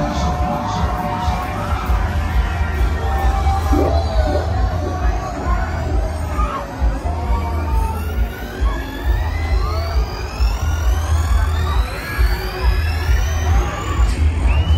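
Loud fairground ride music over the ride's sound system, with a heavy pulsing bass beat and a tone rising steadily in pitch through the second half; crowd noise mixes in.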